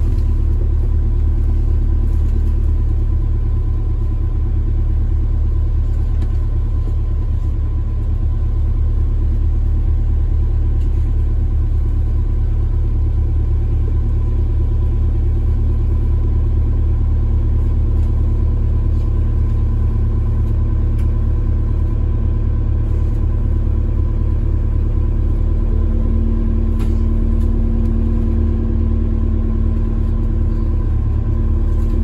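Alexander Dennis Enviro400 MMC double-decker bus heard from a passenger seat while driving: a steady low engine and road rumble with faint steady whines. A louder hum joins about four seconds before the end.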